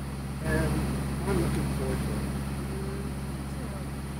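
A sailboat's engine running with a steady low hum while under way, and a few faint voice sounds over it.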